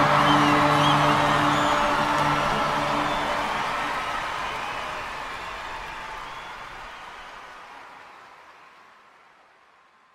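A live band's final held chord dies away, over audience applause with a few whoops and whistles. The whole sound fades steadily out to silence near the end.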